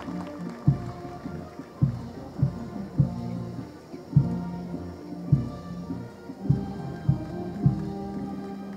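Military band playing a march: sustained brass-like notes over bass drum strokes marking the beat about every half second.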